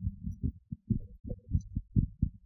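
Soft, irregular low thumps, several a second: handling noise from a microphone being moved and gripped.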